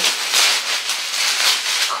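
Packaging and clothing rustling irregularly as garments are dug out of a package.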